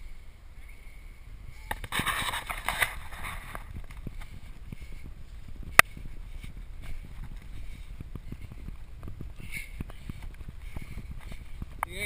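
Steady low rumble of wind and motion on the microphone of a camera moving along a paved path. There is a rush of hissing noise about two seconds in and one sharp click about halfway through.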